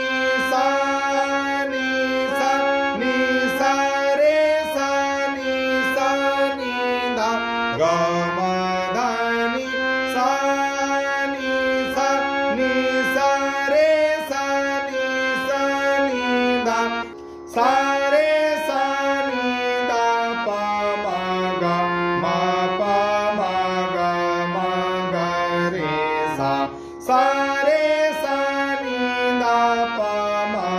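Harmonium playing the melody of a sargam geet in Raag Khamaj: reed notes moving step by step over steadily held lower drone notes, with two short breaks, one a little past halfway and one near the end.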